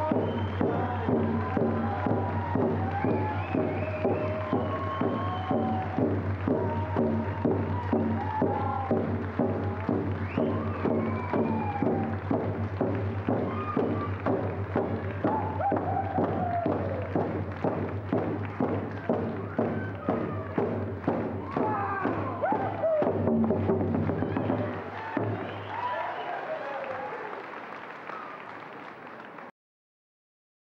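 Group singing accompanied by hand-held hide frame drums struck in a steady, even beat. The drumming and song stop about 25 seconds in, leaving a few fading voices.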